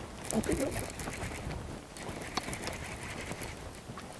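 Baitcasting reel being cranked to bring in a hooked smallmouth bass just after the hookset, with scattered light clicks. A brief murmur of a man's voice near the start.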